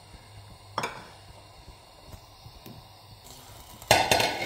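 Raw chicken pieces sizzling faintly in oil in a nonstick frying pan, with a single click about a second in. Near the end a silicone slotted spatula starts stirring, scraping loudly against the pan.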